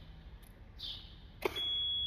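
A click as the ignition is switched on, followed about one and a half seconds in by a steady, high-pitched electronic beep from the mini excavator's warning buzzer.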